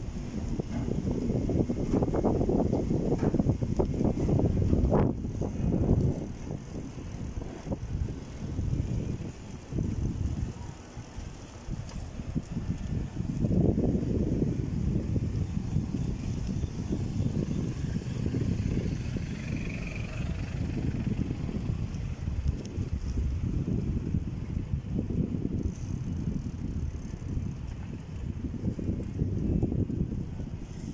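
Wind buffeting a microphone carried along on a moving bicycle: a low noise that rises and falls in uneven gusts.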